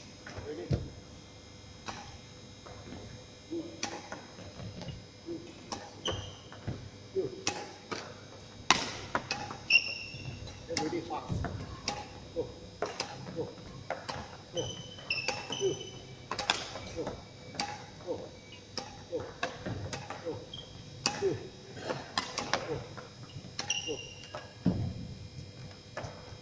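Badminton rackets striking feathered shuttlecocks in a feeding drill: sharp thwacks about once or twice a second. There are short high squeaks from court shoes on the wooden floor every few seconds.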